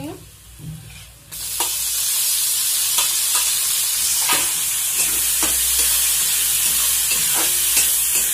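Chopped tomatoes frying in hot oil with onions in a steel kadhai. A loud, steady sizzle starts suddenly about a second in, and a metal spatula scrapes and clicks against the pan several times.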